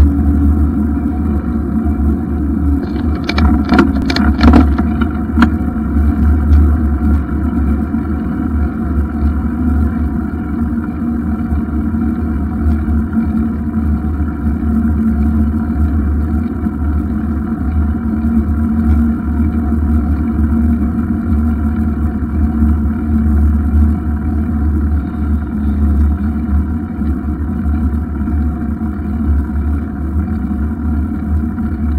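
Steady low rumble of wind on the microphone and road noise from a bicycle riding along a paved road, with a short cluster of clicks and rattles about three to five seconds in.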